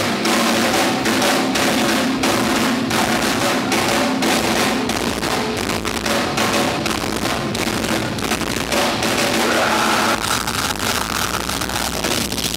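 Live rock band playing loud: electric guitars, bass guitar and drum kit, with rapid drum hits.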